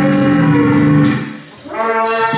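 Free-improvised music: a long held low tone from the saxophone over a lower drone from the guitar and electronics. It fades out about a second and a half in, and a new, brighter held note starts just before the end.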